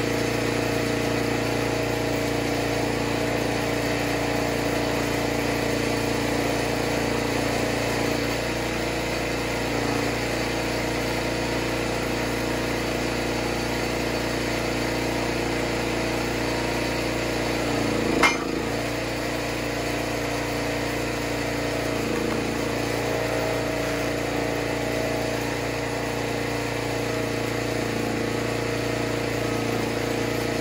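Engine of a homemade hydraulic log splitter running steadily while rounds are split, its note shifting slightly a few times. One sharp crack about 18 seconds in.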